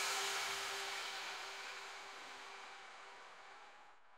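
The last hit of an electronic dance track ringing out: a hissing synth wash with a faint held tone, fading steadily away to silence by the end.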